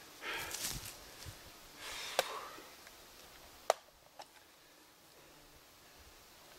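Faint rustling of people moving about in the brush, with a few sharp clicks, the loudest about two thirds of the way through.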